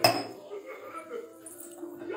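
A single sharp clatter right at the start, much the loudest sound, followed by a lower steady mix of faint background sound.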